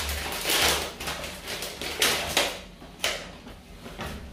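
Crinkling and rustling of clear plastic food packaging as sliced sandwich fillings are unwrapped by hand, in a handful of short, irregular bursts.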